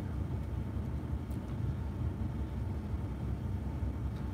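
Steady low rumble of a vehicle's engine idling, heard from inside the cabin.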